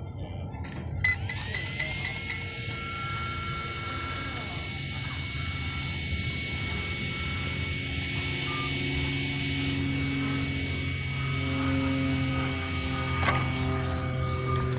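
A click, then a small cooling fan on an electric RC car spinning up in about a second to a steady high whine.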